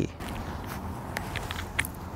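A few light, irregular clicks and rustles of handling over faint outdoor background noise.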